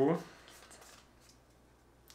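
Pokémon trading cards being slid one behind another by hand, a faint dry rubbing and flicking of card against card.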